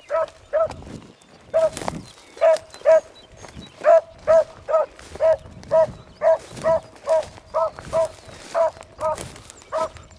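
A beagle baying while running a rabbit on scent: a steady string of short barks, all at much the same pitch, about two a second.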